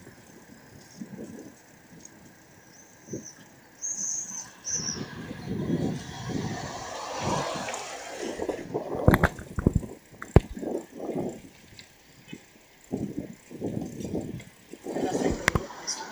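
Riding a bicycle along a town street: road and traffic noise with indistinct voices of the riders, and a few sharp clicks or knocks in the second half.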